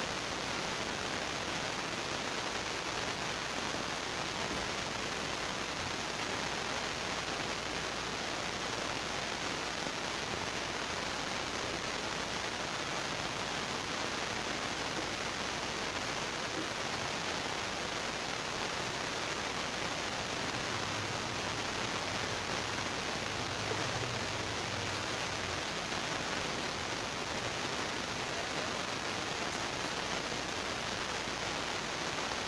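A steady, even hiss that does not change, with no distinct knocks, voices or other events.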